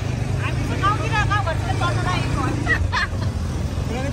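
A vehicle engine runs with a steady low rumble under the overlapping chatter of several people talking, heard from the open back of the moving vehicle.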